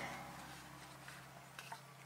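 Quiet room tone with a steady low hum and a couple of faint ticks near the end.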